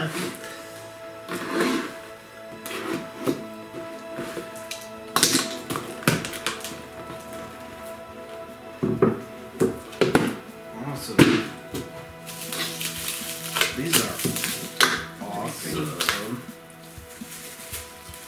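Handling noise from a small cardboard box and plastic wrapping: scraping, rustling and several sharp knocks as the box top is lifted off and a resin piece is pulled out of its wrap. Background music with steady held tones runs underneath.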